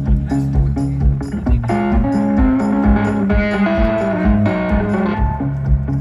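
A live band playing through an outdoor festival PA: guitars and bass over a steady kick-drum beat.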